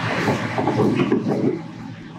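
Gloved hands working a PVC union fitting onto a pipe adapter: dense, irregular rustling and scraping with small plastic clicks, easing a little near the end.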